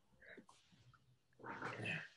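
A short, low, rough growl-like vocal sound about a second and a half in, after a few faint clicks and rustles.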